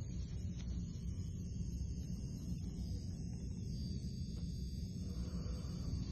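Handheld gold T-bar vibrating massager running with a steady low buzz.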